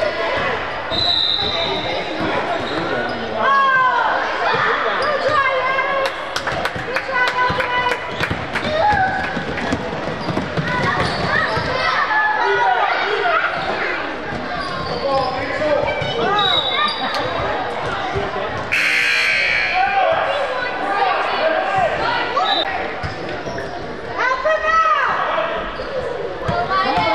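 A basketball dribbled and bouncing on a gym's hardwood floor, repeatedly, during play, with players' and spectators' voices in the echoing hall. A short burst of noise comes about three quarters of the way in.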